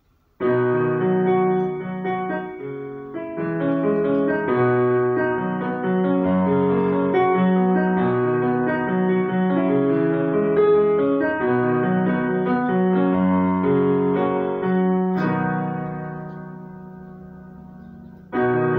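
Casio electronic keyboard on a piano voice playing a chord progression in the key of D sharp (E-flat), starting about half a second in. The chords ring on and fade away over the last few seconds.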